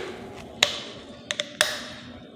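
Cap of a plastic cola bottle being twisted open: a few sharp clicks, each trailing off in a short fizzing hiss.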